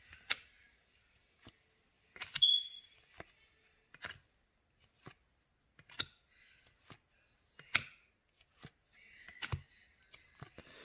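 A stack of stiff cardboard trading cards being leafed through by hand, one card at a time. Each card gives a sharp flick or snap as it is slid off the stack, roughly every second or two, the loudest about two and a half seconds in, with soft sliding rustles between.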